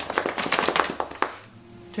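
A drumroll drummed by hand: fast, even taps that stop about a second and a half in.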